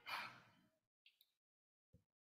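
A man's short breath out, like a sigh, close to the microphone, followed by a few faint clicks.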